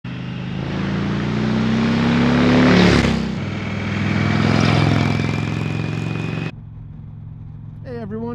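Indian Chieftain Dark Horse motorcycle's V-twin engine passing close by, its note rising as it approaches and loudest about three seconds in, followed by a second pass. About six and a half seconds in the sound cuts suddenly to a quieter, steady riding noise.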